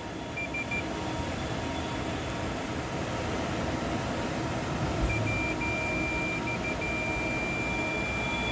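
Fluke 115 multimeter's continuity beeper sounding a single high tone across a cartridge fuse: three short chirps near the start, then from about five seconds in a longer beep, briefly broken a few times before it holds steady. The unbroken tone signals continuity through the fuse: the fuse is good.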